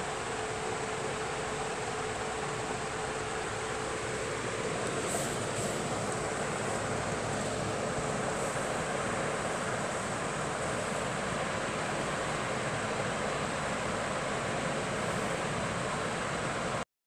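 A steady, even hiss with no speech, with a faint steady hum in the first few seconds.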